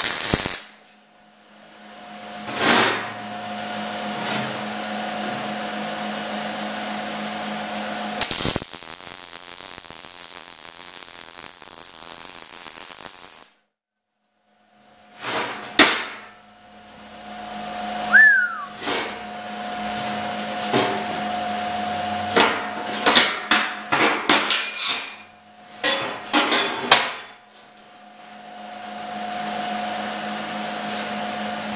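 MIG welder (ESAB Rebel 215ic) running ER70S-6 wire on thin stainless exhaust tubing. A brief arc burst comes at the start, then a steady arc crackle for about five seconds that cuts off suddenly. Over a steady fan hum, a later run of sharp metallic clicks and knocks follows as the pipe is worked on the steel table.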